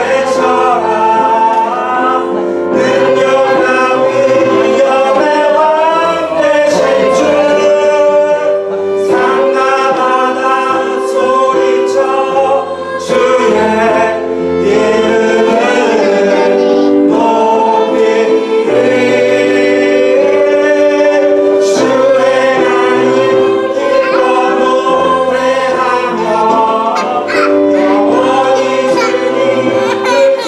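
A small mixed group of men's and women's voices singing together, accompanied by a violin and a keyboard.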